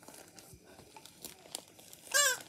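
Faint rustling with scattered small clicks: a plush hand puppet and a plastic toy baby bottle being handled.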